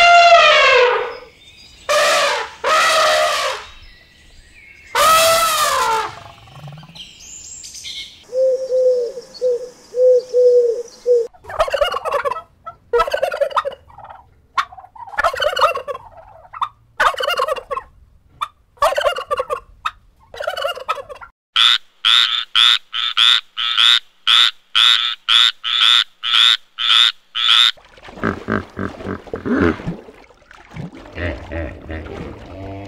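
An elephant trumpets three times. Then a flock of domestic white turkeys calls in a run of gobbles and yelps, ending in a long, even series of about two calls a second. Near the end a hippopotamus starts grunting.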